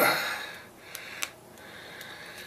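A strained breath out, then two small sharp plastic clicks about a quarter-second apart as a tight, new squeeze bottle is worked out of a box mod's base compartment.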